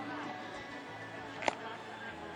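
Background music with a sharp click about one and a half seconds in.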